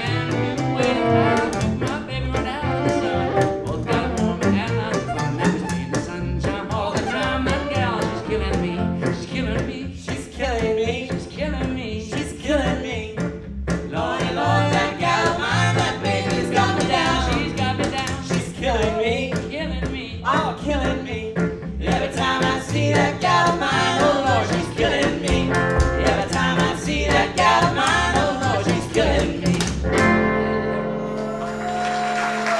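Live western swing trio playing an instrumental passage: a bowed fiddle carries the melody over a strummed archtop guitar and a plucked upright bass keeping a steady beat.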